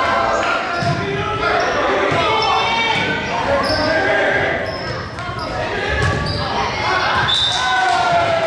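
Voices of players and spectators echoing in a large gym during a volleyball rally, with dull thumps of the volleyball being hit about a second in and again around six seconds in.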